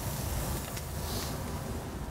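Butter and a salmon fillet sizzling steadily in a hot copper sauté pan, over a low rumble.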